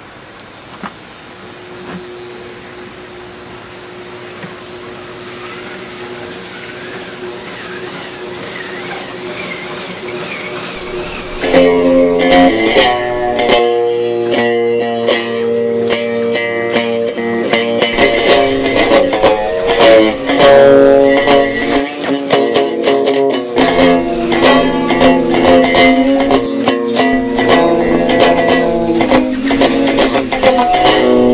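An electric guitar through a small amplifier: first a hum and hiss with one steady tone, swelling gradually louder, then about eleven seconds in loud sustained notes and chords begin and keep changing.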